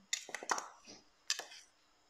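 Metal spoon clinking and scraping against a small bowl while scooping out a condiment. There is a quick cluster of clinks in the first half-second and one more after about a second.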